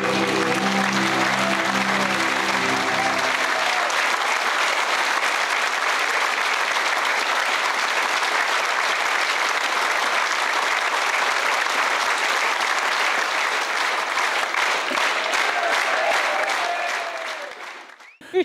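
A theatre audience applauding, with the last held notes of the music under it for the first three seconds or so. The applause fades out just before the end.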